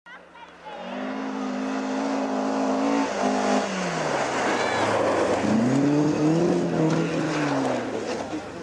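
Rally car engine at high revs, its pitch dropping sharply about three and a half seconds in, then a noisy rush of a second or so, and the engine revving up again and falling away near the end.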